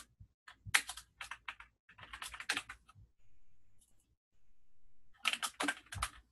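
Typing on a computer keyboard: quick runs of keystrokes with a pause of about two seconds in the middle, then a louder run near the end.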